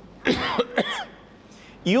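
A man briefly coughs and clears his throat within the first second.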